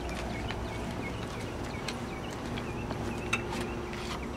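Outdoor background: a steady low hum with faint short chirps recurring, and a few light footsteps on pavement; a sharper click a little after three seconds in.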